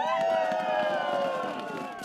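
Several sled dogs howling together in long, overlapping calls that sink slightly in pitch and fade a little near the end.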